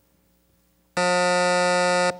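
Quiz-show time-out buzzer: one steady, harsh buzz about a second long, starting about a second in. It signals that time has run out with no team answering.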